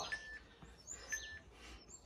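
A bird chirping faintly outdoors, one short call about once a second, each a quick falling note ending on a brief steady whistle.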